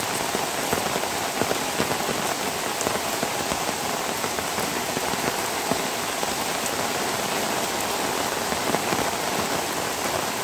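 Steady rain falling, a dense even hiss of water with many small drop ticks scattered through it.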